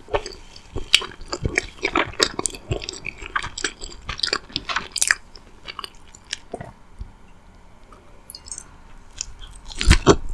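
Close-miked chewing of a bite of soft chocolate-frosted doughnut, with many quick wet mouth clicks through the first half. The chewing thins out and grows quieter after about six seconds.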